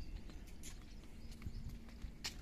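Footsteps on a concrete rooftop: a few irregular scuffs and taps over a steady low rumble.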